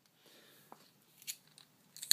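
Near silence with faint handling sounds of a vintage Regens squeeze-action metal lighter: a couple of soft clicks as it is turned in the hand.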